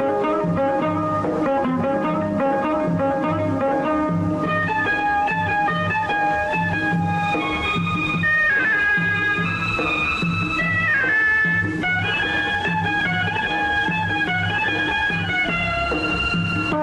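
Instrumental interlude of a Tamil film song, with no singing: a melody line that moves up into a higher register about four seconds in, over a steady bass and drum beat.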